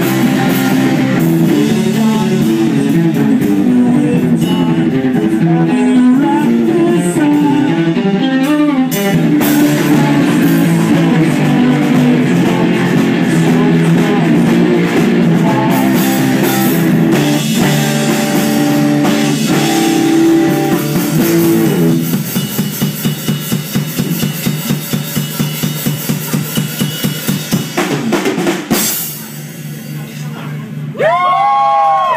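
Live fuzz-rock band playing loud: distorted electric guitar, bass guitar and drum kit. About two-thirds of the way through, the dense guitar wash gives way to a fast, even pulsing beat. This stops shortly before the end as the song finishes.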